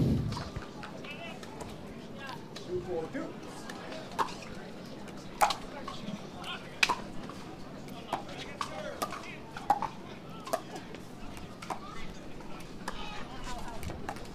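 Pickleball paddles striking a plastic ball in a rally: an irregular series of sharp pops about a second apart, over a low murmur of crowd voices.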